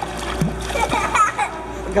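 Water splashing in a shallow stingray touch tank as the rays stir the surface, with a child's voice over it.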